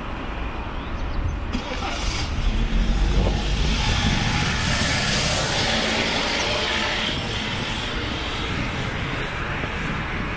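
A car driving past on the street: tyre and engine noise swells from about two seconds in, is loudest around four to six seconds, then fades.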